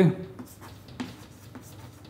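Chalk writing on a chalkboard: faint scratches and light taps as letters are written, with the clearest tap about a second in.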